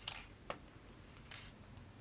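Faint rustle of sewing thread being drawn taut through a stuffed cloth doll and hands handling the fabric, with a small click about half a second in.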